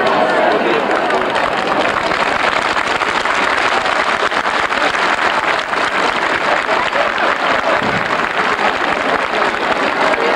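Dense crowd hubbub: many people talking at once, steady and loud throughout.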